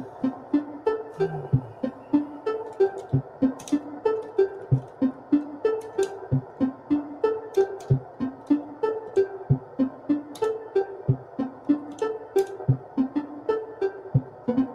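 Live-coded electronic music from a Eurorack modular synthesizer sequenced by a monome Teletype. It plays a steady pulse of short low notes that bend downward, a few to the second, with pitched blips, high clicks and a sustained mid-range drone underneath.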